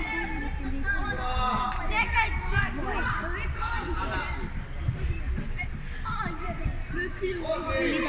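Overlapping voices of spectators and young players calling out during a football game, with a few short knocks among them.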